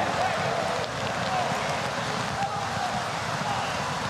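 Steady hiss of heavy rain falling on an open football stadium, with faint voices in the distance.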